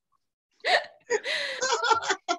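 People laughing over a video call: after about half a second of dead silence, a short rising burst of laughter, then more laughing from about a second in.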